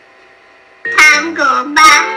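Guitar background music cuts off, and after a short quiet gap a high-pitched voice starts vocalizing or singing about a second in, its pitch sliding up and down, with no clear words.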